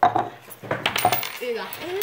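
Coins, quarters, clinking as they drop and are handled on a hard table. A few sharp metallic clicks come at the start and a cluster comes about a second in, one with a brief ring.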